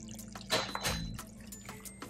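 Thick curry sauce bubbling in the pan, with a few soft pops about half a second and a second in.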